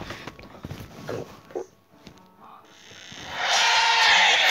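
Music from a phone's own loudspeaker, not the switched-off Bluetooth headphones, fading in a little under three seconds in and quickly growing loud. A few brief faint sounds come before it.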